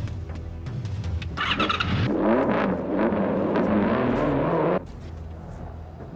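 Sport motorcycle engine coming in about a second and a half in and revving, its pitch rising and falling, then cut off abruptly about five seconds in.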